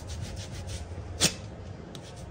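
A hand rubbing a paper waxing strip down onto a waxed leg. A little past a second in comes one short, sharp rip as the strip is pulled off.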